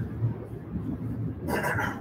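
Dry-erase marker scraping across a whiteboard, with a short stroke near the end, over a low steady room hum.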